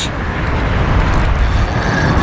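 Steady rushing, rumbling wind noise buffeting the microphone, heaviest in the low end.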